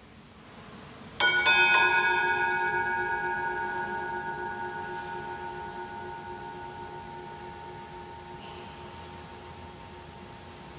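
A metal altar bell struck once about a second in, ringing with a long, slowly fading tone; at a Mass it marks the elevation of the chalice at the consecration.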